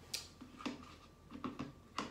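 A few faint, short clicks and knocks of objects being handled and set down on a wooden table, spaced roughly half a second apart.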